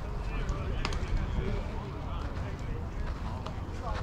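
Indistinct voices of several people talking at a distance over a steady low rumble, with a sharp click about a second in.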